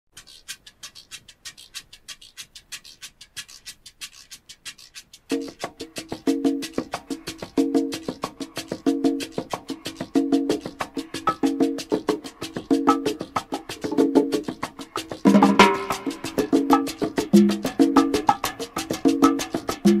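Opening of a salsa recording: a light percussion pattern of rapid, even clicks plays alone, then about five seconds in a repeating pitched figure joins it. Around fifteen seconds in more instruments come in and the music gets louder and fuller.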